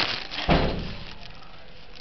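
Two sudden thumps about half a second apart, the second deeper and longer.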